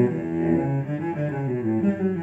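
Solo cello bowed, playing a run of changing notes.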